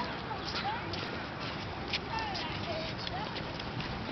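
A group of children chattering and calling out as they walk, with scattered footsteps on the concrete sidewalk.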